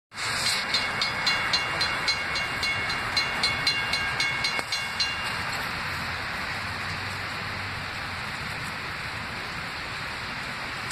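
Railroad grade-crossing bell ringing at about four strikes a second, then stopping about five seconds in, over a steady hiss of rain.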